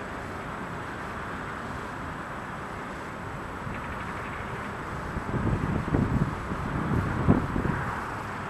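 Steady outdoor background noise, with irregular low rumbling that swells for the last three seconds.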